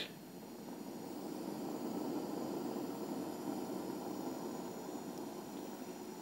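Butane gas burner lit in the firebox of a live-steam model locomotive, burning with a steady low rushing noise that swells a little about two seconds in. The boiler is dry, so it is only the burner that is running.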